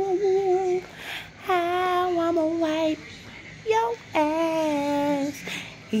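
A woman singing wordless, high-pitched held notes, a few long notes of a second or more each with a slight wobble and short breaks between them.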